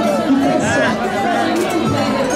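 A group of acoustic guitars playing together while marching, with voices sounding over the music.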